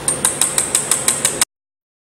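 Pulsed laser mould-repair welder firing at the workpiece: sharp ticks at about six a second over the machine's steady hum, cutting off suddenly after about a second and a half.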